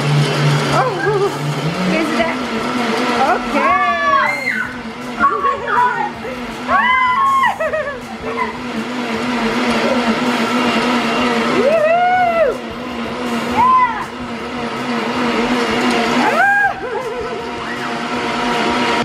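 Two countertop blenders, a Vitamix and a Black+Decker, running together and blending milkshakes. Their motor hum steps up in pitch about two seconds in and then holds steady, under several short high cries that rise and fall in pitch.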